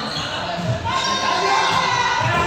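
A group playing a ball game on a sports-hall floor: soft thumps from feet and a large inflatable exercise ball, under overlapping voices calling out, all ringing in the big hall.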